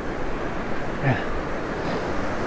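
Steady rush of surf breaking on the beach, with wind on the microphone. A brief low voice sound, falling in pitch, comes about a second in.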